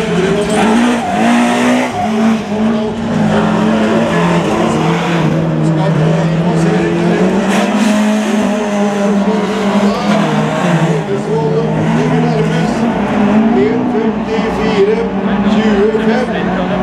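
Rallycross race cars' engines, a BMW 3 Series and a Ford Focus among them, revving hard through a corner section, their engine notes rising and falling repeatedly as the drivers work the throttle and shift gears.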